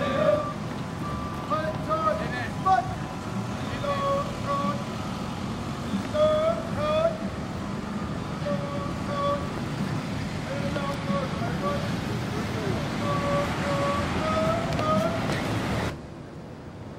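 Marine drill instructor's shouted marching cadence: short, sing-song calls repeated every second or two as a platoon of recruits marches, over steady outdoor noise.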